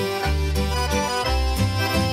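Swedish old-time dance music (gammeldans): accordion playing the tune over a bass line that steps from note to note.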